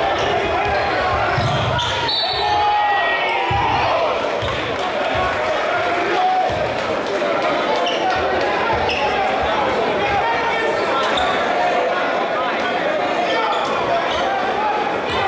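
A basketball bouncing on a hardwood gym floor and sneakers squeaking, over steady indistinct crowd chatter that echoes in a large gymnasium.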